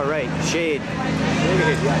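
People talking over a steady low machine hum.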